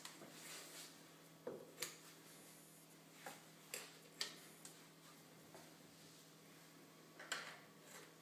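Kitchen scissors snipping the overhanging leek leaves around a terrine dish: a handful of faint, short snips spread out, with quiet pauses between them.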